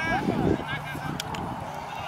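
Children's high-pitched shouts and calls, loudest about half a second in.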